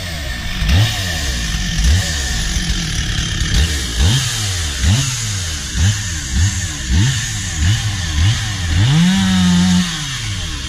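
Stihl two-stroke chainsaw running off the cut, idling with repeated short throttle blips that rise and fall about once or twice a second. Near the end it is held at high revs for about a second, then drops back.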